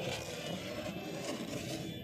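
Handling noise: fingers rubbing and scraping over a high-heeled sandal held right against the microphone, a steady rasping.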